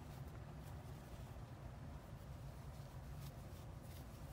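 Quiet room tone: a steady low hum with a few faint, soft clicks.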